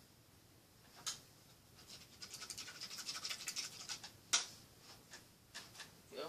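Painting supplies being handled: a run of quick, scratchy rubbing strokes for about two seconds, then one sharp click and a few lighter clicks near the end.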